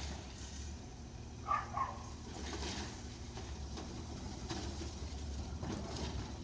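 Garbage truck's diesel engine running with a steady low hum as the truck creeps forward, with two short high chirps about a second and a half in.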